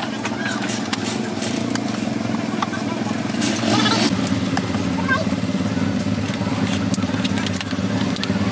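An engine running steadily in the background, with scattered clicks and cracks as a car tail light lens is pried off its plastic housing with a screwdriver. There is a louder scraping crack about three and a half seconds in.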